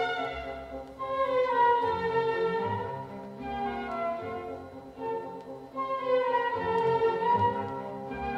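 Classical music with long, sustained melodic notes, played back through B&W 801 Matrix Series 2 loudspeakers in a listening room.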